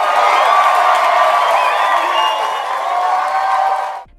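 A crowd cheering and screaming excitedly, with high shrieks and whoops rising above the din.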